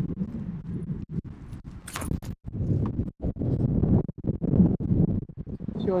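Wind buffeting the camera microphone: a ragged low rumble that swells and cuts out again and again, with one sharp knock about two seconds in.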